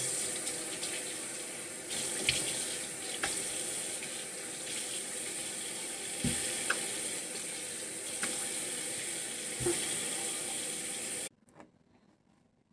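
Bathroom sink faucet running steadily while soap is rinsed off a face, with a few splashes from cupped hands. The water cuts off suddenly near the end as the tap is shut.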